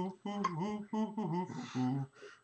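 A man's voice, quietly vocalising in short sing-song phrases with no clear words.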